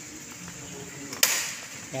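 A single sharp click about a second in, against faint background noise.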